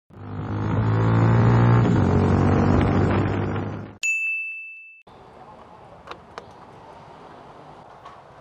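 An edited intro: a loud, sustained drone full of steady tones swells for about four seconds and cuts off, then a single bright ding rings for about a second as a title card appears. Faint background noise with two small clicks follows.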